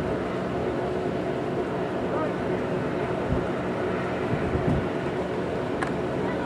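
Steady outdoor background noise, with wind buffeting the microphone in low gusts and one sharp click near the end.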